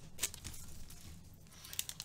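Faint crinkling and light ticks from a foil-wrapped baseball card pack being handled in the fingers, strongest in the first moments, then dying down to little more than room tone.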